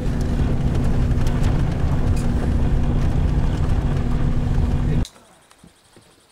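Vehicle cabin noise while driving on a gravel road: a steady low engine and tyre rumble with a constant hum. It cuts off suddenly about five seconds in, leaving only faint outdoor quiet.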